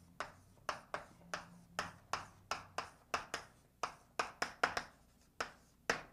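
Chalk writing on a blackboard: an irregular run of short, sharp taps, about three a second, as each letter is struck onto the board.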